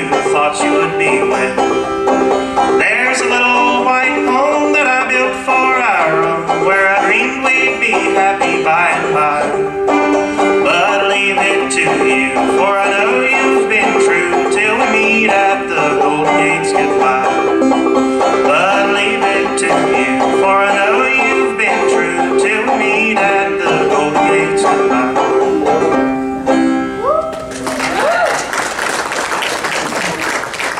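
A banjo played solo, picking the tune over one steady ringing note, stopping a few seconds before the end. Applause follows.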